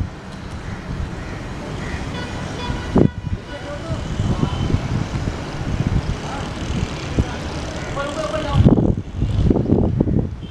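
Wind buffeting the microphone outdoors, with faint distant voices calling now and then.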